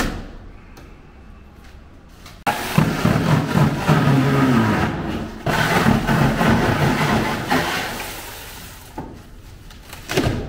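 Loud rough scraping and crumbling as old foam and coating decor is broken out of a terrarium's back wall. It comes in two long stretches, the first starting suddenly about two and a half seconds in, and dies down near the end.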